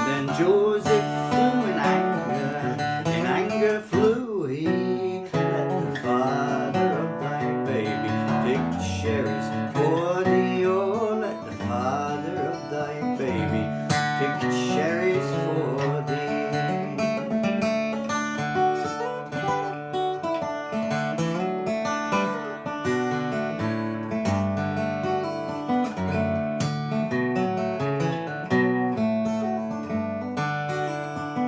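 Solo acoustic guitar played fingerstyle: an unaccompanied instrumental passage of a folk song, with notes ringing together over a steady bass.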